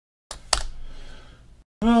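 Dead silence at the start. About a third of a second in, the audio cuts in, followed by a single sharp click, typical of a computer key or mouse button, then low background noise. After a brief dropout, a man starts speaking near the end.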